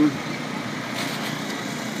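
Steady outdoor background noise: an even hiss and rumble with no distinct tones or rhythm.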